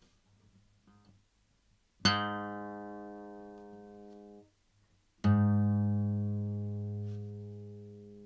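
Acoustic guitar string plucked twice on the same low note, each note ringing and fading for two to three seconds before being stopped. The first pluck, near the bridge, sounds bright and twangy with many high overtones. The second, plucked nearer the middle of the string, sounds fuller and bassier.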